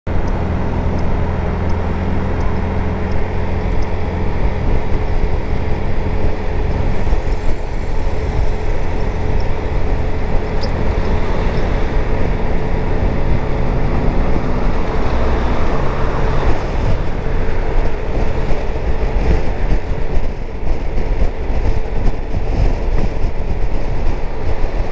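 Zontes 350E maxi-scooter at highway speed, about 80 to 90 km/h: steady wind rush on the rider's microphone over the single-cylinder engine's drone, with a steady hum running underneath.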